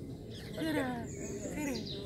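Women's voices in rising and falling phrases, with a high bird chirp a little past the middle.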